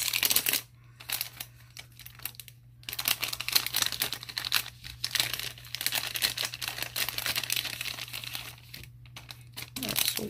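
Clear plastic sleeve crinkling as it is pulled open and a bundle of paper die cuts is slid out of it. The crinkling comes in spells: quieter from about one to three seconds in, with a brief pause near the end.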